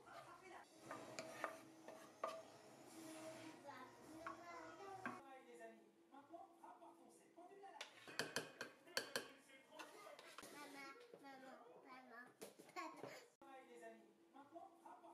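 A young child's voice talking quietly throughout. A cluster of sharp clinks from a spoon against a ceramic baking dish comes about eight to nine seconds in.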